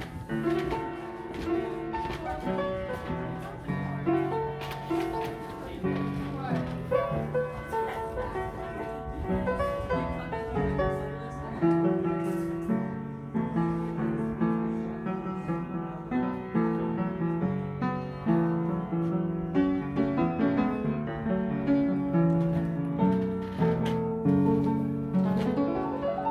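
Antique upright player piano playing a tune by itself, its hammers striking the strings in a continuous run of notes.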